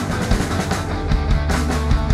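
Punk rock band playing live and loud: electric guitar over drums with steady cymbal and drum hits.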